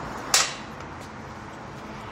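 A single sharp click about a third of a second in, then steady background noise.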